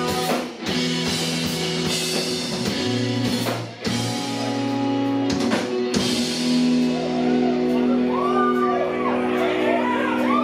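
Live emo rock band playing: distorted electric guitars holding chords over drums, the music dipping briefly twice, about half a second in and near four seconds. In the second half, wavering voices come in over the band.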